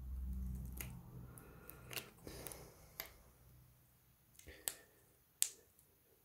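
A string of small, sharp clicks and taps from the phone's parts being handled, as the display's flex-cable connector is pressed onto its socket on the main board, which should click when it seats. A low hum fades out in the first second or so.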